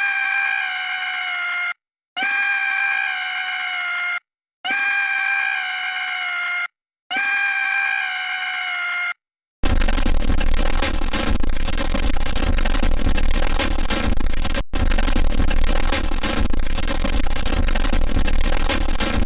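A stock cartoon scream sound effect played four times in a row, the same clip each time, about two seconds long with a short silence between, falling slightly in pitch. About ten seconds in it gives way to a loud, dense blast of noise that runs on: the 'triggered' meme sound effect.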